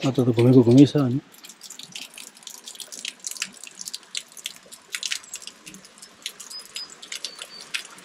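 A thin stream of water falling from a spout in a stone wall, splashing and pattering irregularly onto the stone basin below.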